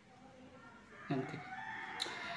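A rooster crowing faintly, starting about a second in: one drawn-out, steady-pitched call that carries on past the end.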